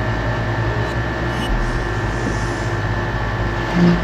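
Steady background hum and hiss that does not change, with several steady low tones under it. A short hummed 'hmm' from a voice comes near the end.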